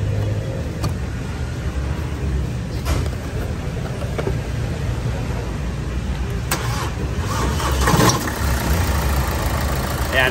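Hyundai Santa Fe engine idling steadily, with a few light clicks and a brief louder noise about eight seconds in.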